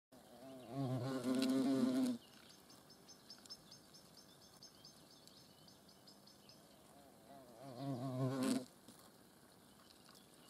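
European hornet wings buzzing in two loud bursts, a longer one about a second in and a shorter one near the end. The pitch is low and wavers.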